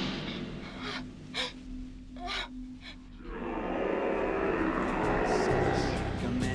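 A frightened woman's short gasping breaths, four in the first three seconds, over a faint low drone. From about three seconds in, a fuller sustained musical drone swells up and holds.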